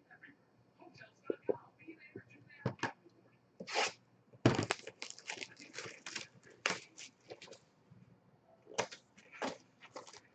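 Cardboard trading-card box and its cards being handled: a string of short tearing and rustling scrapes as the box is tipped over and packs are pulled out, the loudest about halfway through.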